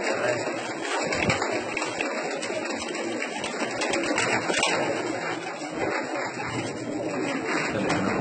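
A flock of pigeons in a loft: a steady murmur of cooing and rustling, with short clicks and flaps of wings as birds shift and flutter on their perches.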